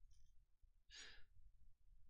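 Near silence, with one short, faint breath into a headset microphone about a second in.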